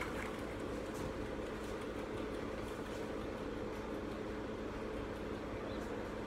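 Electric fan running, a steady hum with a few constant tones.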